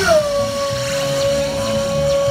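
A single long, high note that slides down at the start and is then held steady at one pitch, with background music underneath.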